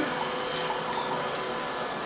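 Bidet nozzle of a Japanese electronic toilet seat spraying a steady jet of water into the bowl, with a faint steady hum from the seat's pump.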